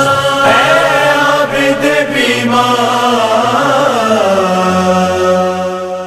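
Wordless vocal chant from a noha lament: voices hold a steady hummed drone while a melodic voice glides over it. The final held notes fade away at the end.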